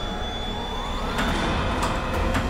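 A low, steady rumbling drone from the drama's suspense score, with a rising swell in its first half. In the second half come two sharp strikes of an ice pick stabbing into a block of ice.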